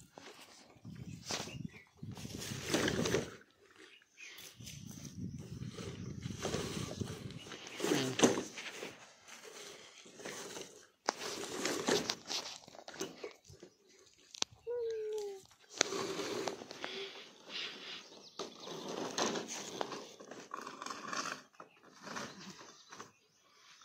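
Handling noise from a bundle of long black plastic pipes being tied with rope and lifted: irregular scraping, rustling and knocks, with a short falling squeal about fifteen seconds in.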